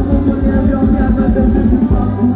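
Thai ramwong dance music from a live band over the PA, with a steady, quick beat.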